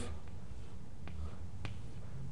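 Room tone with a steady low hum and a few faint, short clicks.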